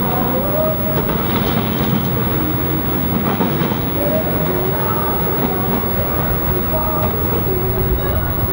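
Vintage W-class tram rolling past on its tracks: a steady rumble of steel wheels on the rails, with street traffic around it.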